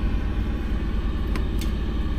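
Steady low rumble of an idling truck engine, heard from inside the semi's sleeper cab, with two light clicks about a second and a half in.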